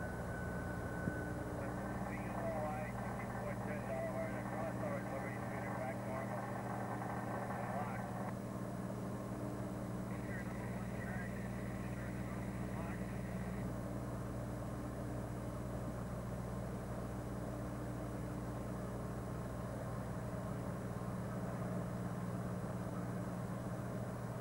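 Diesel locomotive engines idling with a steady low hum. Fainter wavering higher sounds come and go during the first half.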